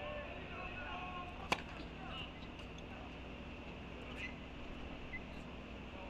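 A single sharp pop of a tennis racket striking the ball on a serve, about one and a half seconds in, over faint steady court ambience.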